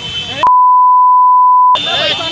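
Censor bleep: a loud, steady 1 kHz tone lasting just over a second, with the original sound blanked out beneath it, starting about half a second in. Excited men's voices come before and after it.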